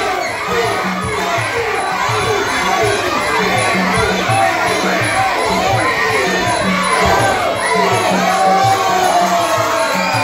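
Ringside crowd, many of them children, shouting and cheering during a Muay Thai clinch, over music with a steady drum beat.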